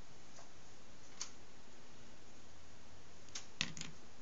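Glass marbles clicking against each other and against a board made of PVC pipe sections as game pieces are handled and placed: one light click about a second in, then a quick cluster of sharper clicks near the end.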